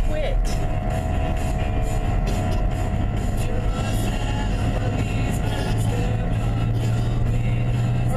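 Steady road and engine drone heard inside a moving car, its low hum growing louder in the last couple of seconds, with music playing underneath.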